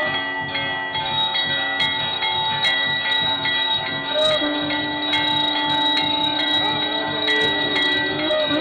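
Hindu temple aarti: bells ringing continuously over a steady drum beat, with sharp metallic clangs. A long held note joins in about halfway through.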